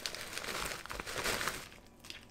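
Plastic bag of frozen raspberries and blueberries crinkling as the berries are poured out into a bowl, with small clicks of the frozen fruit landing. It dies away about a second and a half in.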